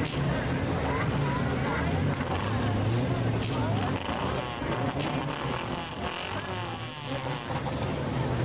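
Four-cylinder enduro race cars running on an oval track, a steady engine drone that eases briefly for a couple of seconds before rising again, with people talking nearby.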